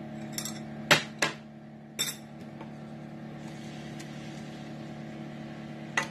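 A glass bowl clinks sharply against a stainless steel skillet four times in the first two seconds as minced garlic is knocked out of it into melted butter. After that comes a soft, steady sizzle of the garlic in the butter over a low, steady hum.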